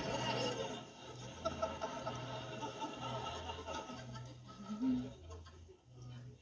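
Sitcom studio audience laughing, played on a television and picked up off its speaker; the laughter dies down near the end.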